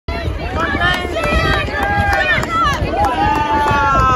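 Spectators cheering on child runners: several high-pitched voices shouting over one another, with long drawn-out calls near the end, and wind rumbling on the microphone.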